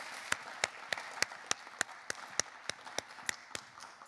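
Audience applauding, with one person's claps standing out close to the microphone at about three to four a second; the applause slowly dies away toward the end.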